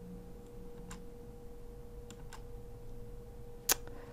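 Quiet room tone with a faint steady hum, broken by a few soft computer keyboard key presses, the sharpest one near the end, as the command output is paged through.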